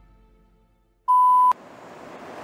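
A single loud, steady electronic beep about half a second long, starting about a second in and cutting off abruptly with a click, after the last notes of soft music have faded out. Faint room hiss follows.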